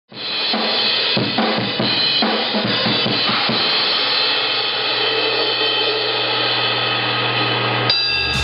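Drum kit played: a string of drum and cymbal hits over the first few seconds, then the cymbals ringing on over a steady low tone.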